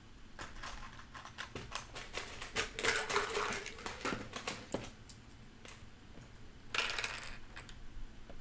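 Plastic LEGO bricks clicking and rattling as they are handled and picked through, a run of small irregular clicks with a denser rattle around three seconds in and a short burst near the end.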